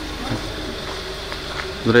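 A steady buzzing hum over continuous outdoor background noise, with a man's voice coming in briefly near the end.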